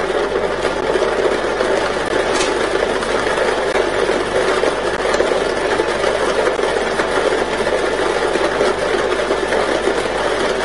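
Air-mix lottery ball drawing machine running: a steady rush from its blower, with the balls clattering inside the clear mixing chamber.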